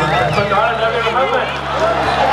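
Voice over an outdoor PA system with crowd noise. The low sustained keyboard chords of the backing music stop about half a second in.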